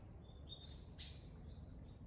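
Faint bird calls: a few short, high chirps, the clearest about a second in, over a steady low rumble.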